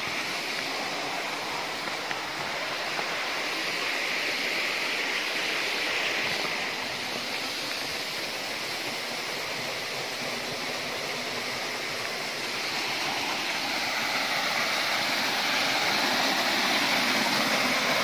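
Steady rush of water from a waterfall, growing slowly louder over the last few seconds.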